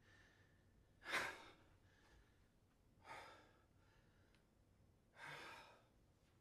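A man breathing out heavily three times, about two seconds apart, the first the loudest, between stretches of near silence.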